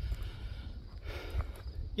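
Uneven low rumble of wind buffeting the microphone, over faint outdoor background noise.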